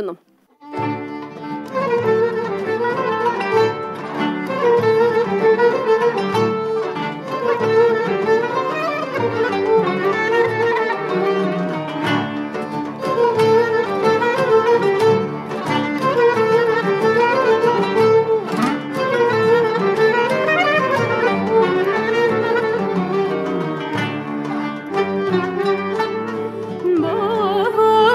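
Instrumental introduction of a hicaz şarkı played by a small Turkish classical music ensemble including kanun and clarinet, an ornamented melody over plucked strings, starting about a second in.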